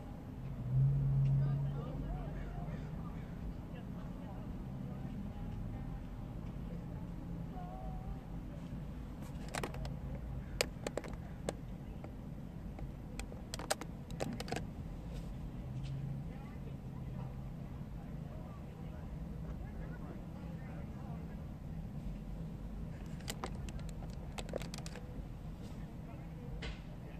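Steady low hum of a car engine running, heard through an open car window, with several sharp clicks around the middle and near the end.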